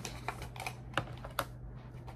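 Cosmetic bottles and containers clicking and knocking against each other as a hand rummages in a zippered makeup pouch: a string of light, irregular clicks, about four of them louder.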